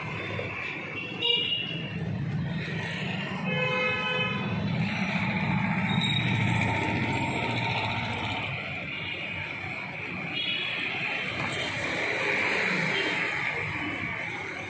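Street traffic noise with a vehicle horn honking once for about a second, about three and a half seconds in; shorter high toots come near the start and again later.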